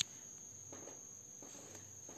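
Quiet pause with a faint steady high-pitched whine over low background hiss, and a single sharp click right at the start.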